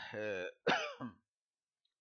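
A man clearing his throat once, briefly, just after the tail of a spoken phrase.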